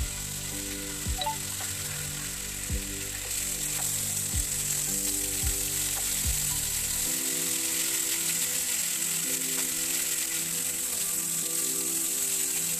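Chicken, capsicum, onion and tomato skewers sizzling as they fry in melted butter in a frying pan, the sizzle growing louder about three seconds in.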